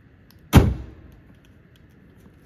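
A car's hood slammed shut: one loud metallic thud about half a second in, dying away quickly.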